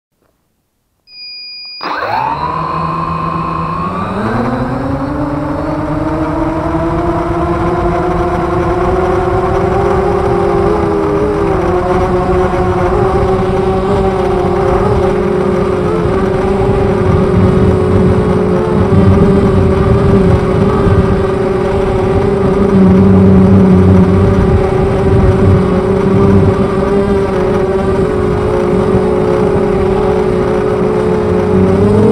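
A short electronic beep, then an FPV250 quadcopter's brushless motors spin up its 6x3 carbon propellers. The whine rises over a few seconds, then holds steady with slight wavers while the quad stays on the ground.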